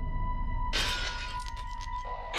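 Low sustained music drone with a thin steady high tone. About a third of the way in, a loud rushing hiss sets in and runs on.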